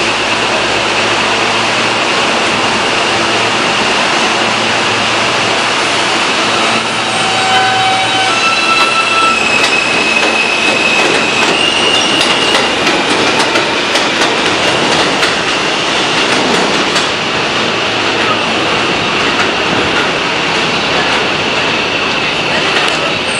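R160A subway train running slowly on elevated track, with the steady rumble of its wheels and a whine from its Alstom ONIX propulsion. From about seven seconds in, the whine steps up in pitch over several seconds. Clacks follow as the wheels cross the rail joints.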